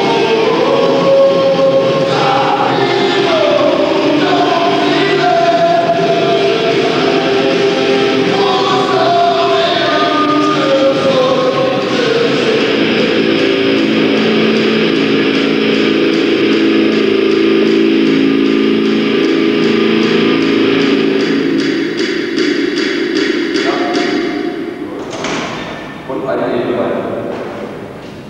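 Music with layered, choir-like singing: moving vocal lines at first, then long held notes, fading out near the end. A short sudden thump comes just before the end.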